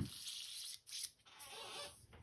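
A click, then an airbrush hissing softly in short bursts, broken twice by brief pauses.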